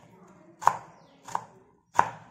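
Kitchen knife chopping snake gourd on a wooden cutting board: slow, even chops of the blade through the gourd onto the board, about two-thirds of a second apart.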